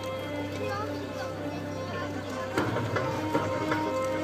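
Steady droning background music with held low tones, under the scattered voices of a crowd.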